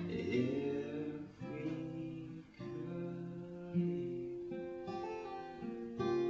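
Steel-string acoustic guitar played solo: sustained chords picked and strummed, changing to a new chord about every second or so.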